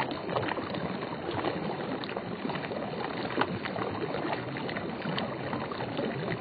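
Water of a shallow stream running and lapping, with many small splashes and drips through it.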